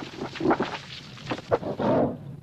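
A lion's roar from a film soundtrack, in several short loud bursts with the loudest near the end, over a continuous low rumble of the stampeding herd.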